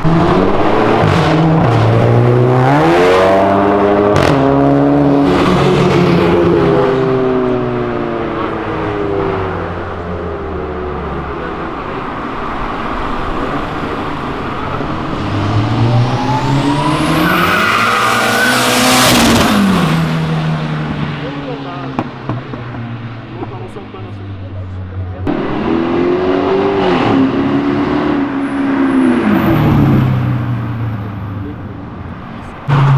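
Car engines accelerating hard one after another, each revving up through gear changes with the pitch climbing and dropping back at each shift. About two thirds of the way in, one car passes close at speed, its pitch rising then falling, with a high whine over it.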